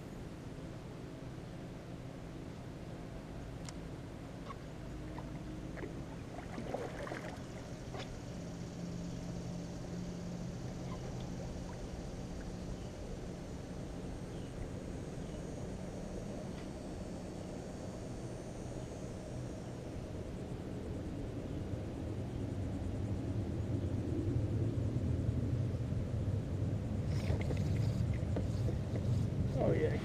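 Outdoor noise on a kayak drifting on open water: a steady low rumble of wind and water that grows louder over the last third, with a few faint knocks about seven seconds in.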